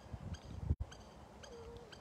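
Soft footsteps on a gravel shore path, recorded on a phone while walking. The sound cuts out for an instant about a second in, and a short faint tone follows near the end.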